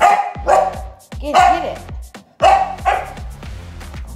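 English Springer Spaniel barking excitedly at a flapping fish toy: five loud barks, the last two close together, over quieter background music.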